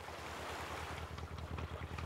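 A fishing boat's motor thrumming with a low, fast pulse over the wash of ocean waves, fading in and growing steadily louder as the boat comes closer.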